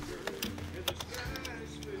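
A few separate clicks of computer keyboard keys being typed, over faint background music.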